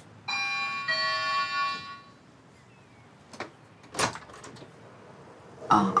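Two-note electronic doorbell chime, a higher note then a lower one, ringing out for about two seconds. It is followed by two sharp clicks as the front door is unlatched and opened.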